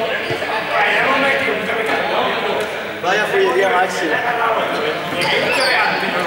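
Many young people talking and calling out over each other in a large sports hall, with a few short knocks of balls bouncing on the floor.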